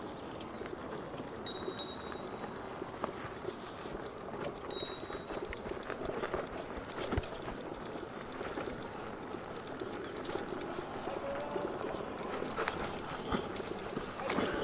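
The knobby tyre of a Veteran Lynx electric unicycle rolling slowly uphill over dry dirt and grass, a steady low rustle with a few light knocks. Two short high beeps come a few seconds apart in the first five seconds.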